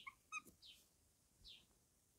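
Faint bird chirps over near silence: short, high, downward-sliding chirps repeated about once every three quarters of a second.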